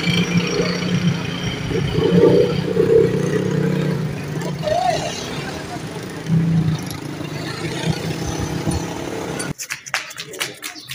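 A motor vehicle's engine running steadily amid outdoor street noise, with indistinct voices; the sound cuts off abruptly shortly before the end.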